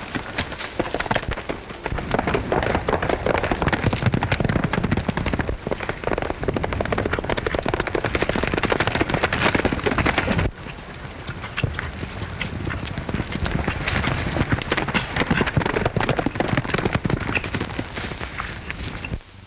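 Horses galloping: a dense, rapid run of hoofbeats. About ten and a half seconds in, it drops suddenly quieter.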